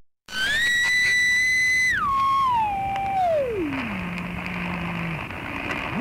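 Shortwave radio receiver being tuned across a carrier: a whistling beat tone that steps down in pitch from high to low over about four seconds, then glides back up near the end, over band hiss. This is the tuning-in of an East German numbers-station transmission.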